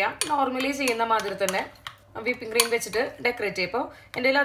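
A metal spoon stirring a thick condensed-milk coating in a glass bowl, knocking against the glass several times.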